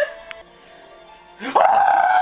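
A young man's laugh starting about a second and a half in with a loud, high-pitched, long held falsetto "aaah", after a brief quiet stretch.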